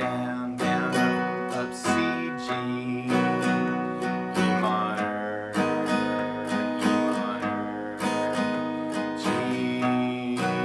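Acoustic guitar, capoed at the fourth fret, strummed through a chord progression in a steady rhythm, with a fresh strum every half second or so.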